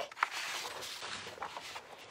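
Soft rustling of a sheet of decoupage paper being slid and turned on a paper-covered work table, with a light tap just after the start, fading slowly.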